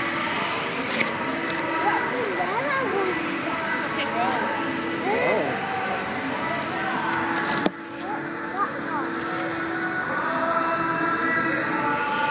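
Babble of many people's voices, some high-pitched like children's, with a steady hum underneath. A sharp click about two-thirds of the way through is followed by a brief dip in loudness.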